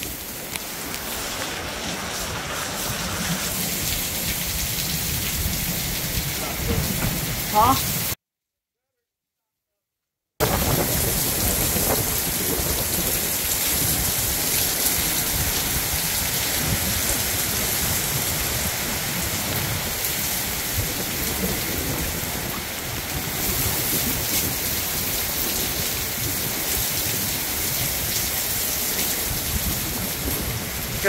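Heavy, steady rain pouring down, with strong storm-wind gusts buffeting the microphone in a low, rumbling roar. The sound cuts out completely for about two seconds about a quarter of the way in.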